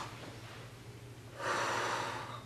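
A man's heavy, breathy exhale, starting about a second and a half in after a quieter stretch.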